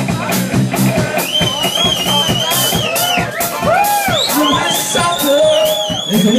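Live rock band playing: drum kit keeping a steady beat under electric guitar, with a high, wavering melody line coming in about a second in and again near the end.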